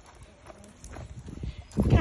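A child's tricycle rolling slowly along a concrete sidewalk, with walking footsteps: faint, irregular light clicks and knocks.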